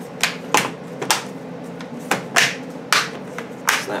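Plastic retaining clips of an HP Stream 11 laptop's top case snapping into the bottom case as the case is pressed down by hand: about seven sharp snaps and pops, irregularly spaced.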